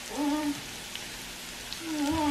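Diced potatoes and onions frying in a pan, a steady sizzle with scattered small pops. A short pitched whine is heard near the start and another near the end.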